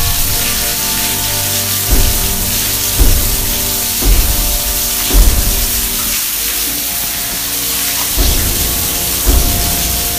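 A film soundtrack: music over a steady hiss, with a low thud about once a second.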